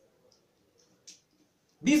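Mostly quiet, with faint handling noises and one short, light click about a second in, from a plastic RJ45 plug being lined up on the trimmed wires of a twisted-pair network cable.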